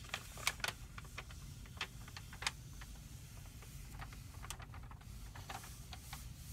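A large rolled paper map crinkling and crackling as it is unrolled by hand. The crackles come in irregular clusters, most of them in the first two and a half seconds and again about four to five and a half seconds in.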